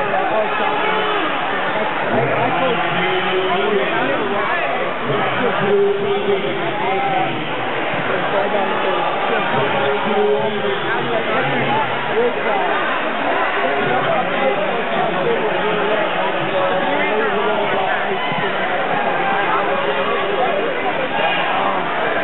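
Crowd babble: many people talking at once in a large hall, a steady hubbub of overlapping voices with no one voice standing out.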